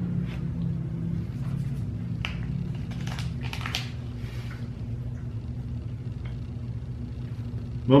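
Soft crinkles and clicks of a snack-bar wrapper being handled, clustered about three seconds in, over a steady low hum.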